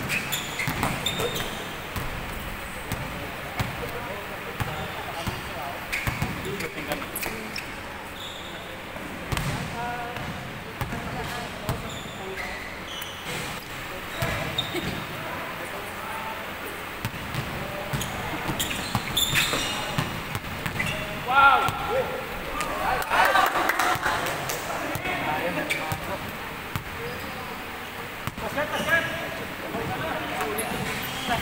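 Basketballs bouncing on a wooden gym floor during play, in repeated short knocks, with players' voices and shouts between them, loudest a little past the middle.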